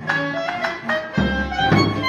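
Live contemporary chamber music led by bowed strings, violin and cello, playing a busy passage of short, shifting notes. A deep note enters just over a second in.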